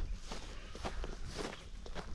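Footsteps of several people walking through dry grass, an irregular run of soft steps.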